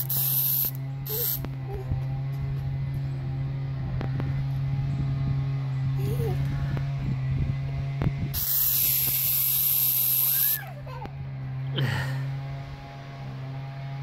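Silly string aerosol can spraying in hissing bursts: a short burst at the start, a brief one about a second in, and a longer spray of about two seconds past the middle. A steady low hum runs underneath throughout.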